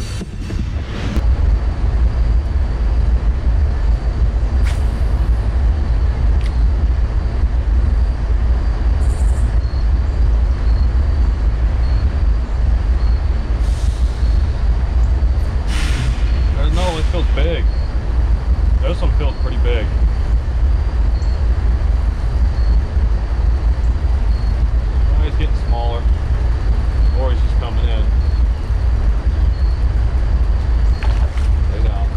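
Wind buffeting the camera microphone: a loud, steady low rumble that sets in about a second in.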